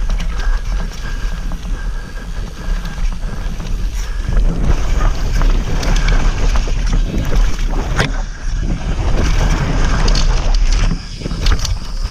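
Mountain bike running fast down a dirt trail: wind buffeting the camera microphone over tyre noise and repeated rattles and knocks from the bike over rough ground. It eases off slightly near the end.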